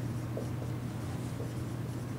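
A dry-erase marker writing on a whiteboard in short strokes, over a steady low hum.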